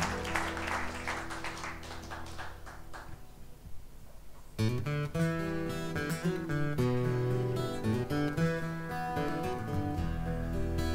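Applause fading out over a held note, then, about four and a half seconds in, two acoustic guitars start picking a song's intro.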